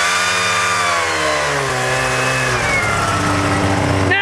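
Two-stroke snowmobile engine revving up and holding high for about two seconds, then dropping back to a lower steady speed, as the stuck sled tries to dig itself out of deep snow.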